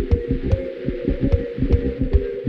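Instrumental stretch of a chill pop track: a steady beat of kick drum and snappy hits over a low bass and keys, with no singing.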